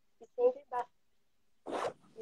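A few broken-up fragments of a woman's voice over a live video call, then a short scratchy rustle near the end, handling noise of something rubbing against a phone's microphone.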